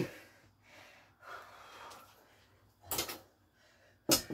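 Heavy breathing of a man catching his breath after hard exercise, faint and breathy, with a short, sharp noise about three seconds in.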